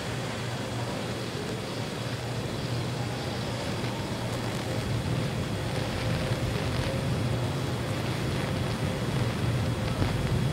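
Steady rushing noise with a low hum underneath, slowly getting louder: the ambient sound around a fully fuelled Falcon 9 rocket on its launch pad.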